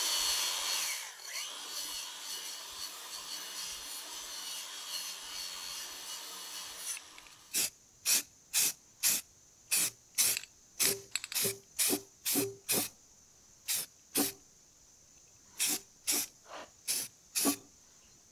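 Angle grinder with a stainless steel wire wheel running against a cast-aluminium weld, scrubbing it clean, for about seven seconds, then stopping. After that, an aerosol spray can hisses in many short, irregular bursts.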